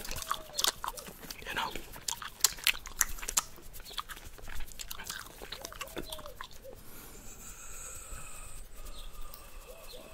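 Bubblegum chewed close to the microphone: irregular wet clicks and smacks of the gum in the mouth.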